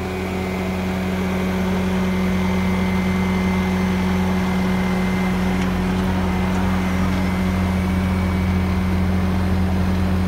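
Bobcat S650 skid-steer loader's diesel engine running steadily, heard from in or at the cab. It grows louder over the first couple of seconds, then holds an even, low hum.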